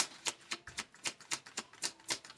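A deck of tarot cards being shuffled by hand: a quick, irregular run of light card clicks, about five or six a second.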